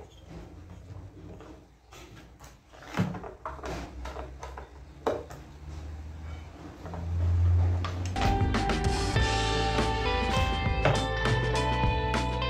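Screwdriver clicking and scraping on the screws of a small washing-machine motor and its plastic housing, with a few sharper knocks. About eight seconds in, background guitar music starts and carries on.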